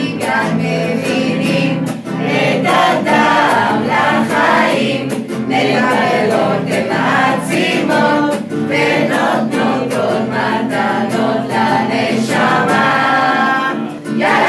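A mixed group of adult voices singing a Hebrew song together in unison, accompanied by strummed acoustic guitar.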